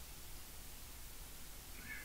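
Faint room tone of steady low hum and hiss. Near the end comes a brief, faint, high-pitched squeak.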